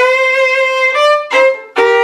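Fiddle playing slow bowed double stops, two notes sounded together. One held chord changes at about a second in, followed by a short stroke and a new chord starting near the end.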